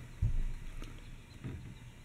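A single low, dull thump about a quarter of a second in, followed by a couple of faint light knocks.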